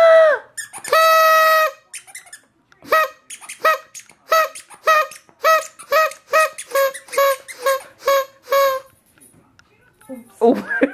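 Squeaky toy squeezed over and over, each squeak at the same steady pitch. Two longer squeaks come first, then a quick run of about a dozen short squeaks at an even pace.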